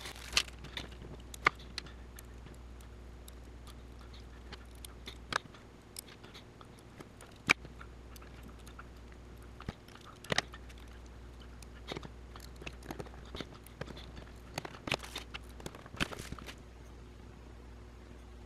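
Small metal standoffs and screws being fitted by hand to a Raspberry Pi Zero circuit board, giving light, scattered clicks and ticks at irregular intervals.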